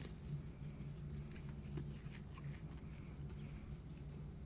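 A goat grazing close up, tearing and chewing grass: a scatter of small crisp rips and clicks, busiest near the middle, over a steady low hum.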